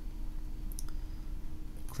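Two faint, quick clicks about halfway through from the computer's controls being worked, over a steady low hum.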